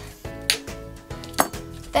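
Background music with sustained tones, and two sharp knocks on a tabletop about a second apart as the plastic tape dispenser and paper pieces are handled.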